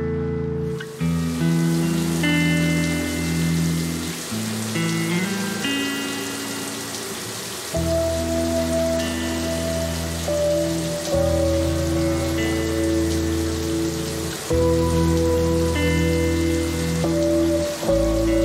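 Shower water spraying in a steady hiss, starting about a second in, under slow background music of held chords.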